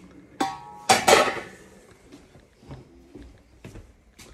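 A metal pot lid clanks against a cooking pot, giving a short ringing tone, followed about a second in by a louder clatter and a few lighter knocks of kitchenware.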